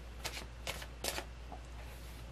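A tarot deck being shuffled by hand: three short card rustles about half a second apart.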